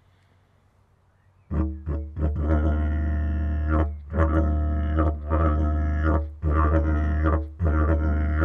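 Didgeridoo starting about a second and a half in, played in short droning phrases broken by brief pauses: the old-school hacked yidaki style, with pauses in between.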